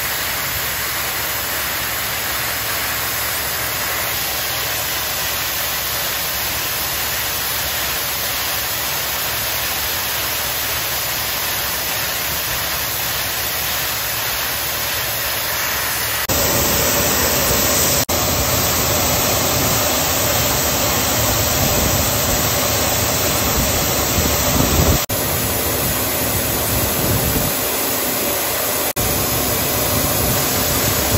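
AGI VR12 grain vacuum running steadily, a continuous rushing hiss of air and shelled corn pulled through its hose. About sixteen seconds in it becomes louder and fuller.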